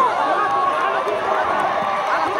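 Spectators at a rugby match shouting and calling out, many voices at once.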